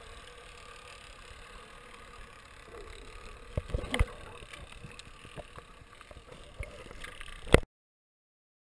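Muffled underwater ambience picked up by an action camera in its waterproof housing: a steady wash of water noise with scattered knocks and clicks. The loudest is a sharp knock near the end, just before the sound cuts off abruptly.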